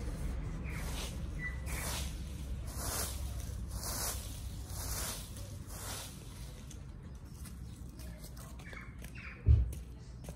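A plastic fan rake sweeping dry fallen leaves over grass, with rustling strokes about once a second for the first six seconds, then quieter. A single low thump near the end.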